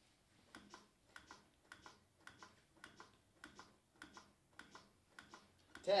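Chest compressions on an adult CPR training manikin: the plastic chest clicks in pairs with each push and release, at a steady rate of about two compressions a second (close to 100 a minute), counting up to ten compressions of a 30-compression cycle.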